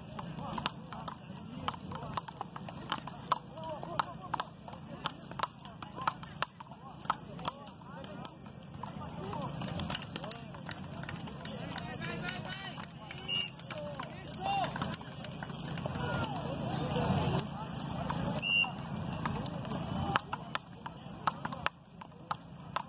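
Frescobol paddles hitting a small ball back and forth in quick, regular knocks. The knocks thin out in the middle, where voices are heard, and start again near the end.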